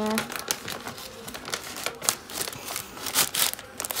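Paper mailer and cardboard packaging rustling as it is handled and opened, with its contents pulled out: an irregular run of crackles and rustles.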